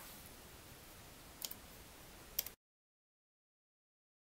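Faint room noise with two short clicks, one about a second and a half in and another just before the sound cuts off abruptly about two and a half seconds in.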